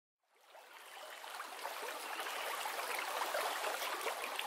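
Flowing stream water, fading in about half a second in and running steadily, with small trickles.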